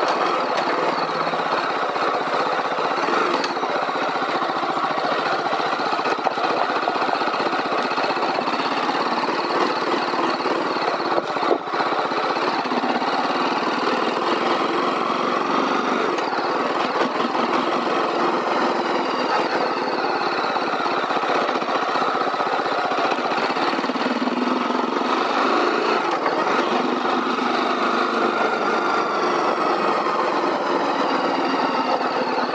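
BMW G310R's single-cylinder engine and exhaust, heard from the saddle while riding at a steady easy pace, rising and falling a little in pitch with small throttle changes. There is one brief thump about eleven seconds in.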